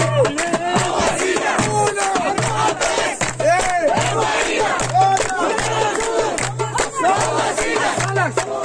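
A dense crowd of fans shouting and chanting together, many voices overlapping, with sharp claps scattered throughout and a low steady note that cuts in and out.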